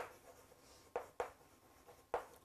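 Chalk scratching faintly on a chalkboard as words are written, with a couple of short chalk taps about a second in.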